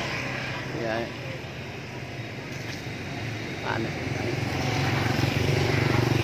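A vehicle engine running with a steady low hum that grows louder over the last couple of seconds, over street background noise, with two brief snatches of voice.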